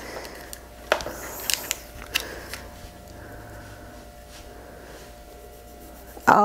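A few light clicks and taps from makeup palettes being handled, mostly in the first half, over a faint steady hum.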